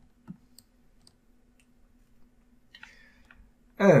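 A few faint, short clicks from a computer mouse over a faint steady hum, with a man's voice starting just before the end.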